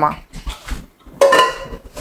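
Metal cookware and utensils clinking on a kitchen counter, with a short metallic ring about a second in.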